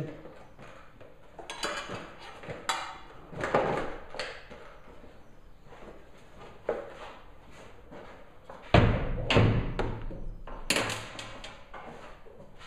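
Knocks, thuds and plastic clatter of a dirt bike's fuel tank and plastic radiator shrouds being unfastened and lifted off the frame, coming in scattered bursts with the loudest thuds about nine seconds in.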